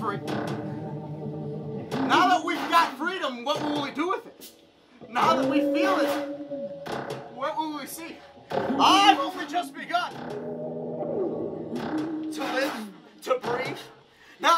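Live improvised music: a voice sings wordless, bending phrases over held notes from electric guitar and keyboard, pausing briefly between phrases.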